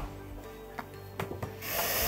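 Quiet background music bed with a few soft handling clicks. A rustling hiss swells near the end.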